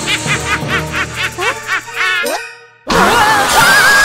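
Cartoon characters' rapid, high-pitched laughter, about four or five "ha"s a second, over background music. It breaks off about two seconds in, and after a brief near-silent gap a loud cry with a wavering pitch comes in near the end.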